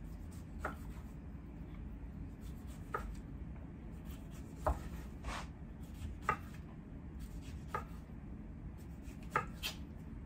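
Kitchen knife dicing a Roma tomato on a wooden cutting board: sharp knocks of the blade hitting the board, about eight of them at irregular gaps of one to two seconds.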